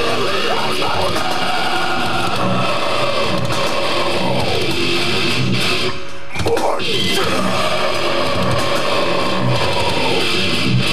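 Live death metal band playing: loud distorted electric guitars over drums, with sliding guitar pitches and a brief break about six seconds in.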